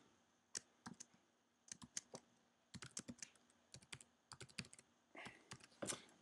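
Faint keystrokes on a computer keyboard, typing in small irregular clusters at about four taps a second.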